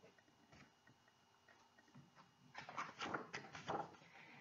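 Paper picture book being handled and its page turned: a few faint ticks, then a short burst of crackly paper rustling for about a second, starting just past halfway.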